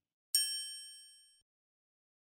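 A single bright, bell-like ding sound effect about a third of a second in, ringing out and fading away over about a second; it accompanies the logo reveal.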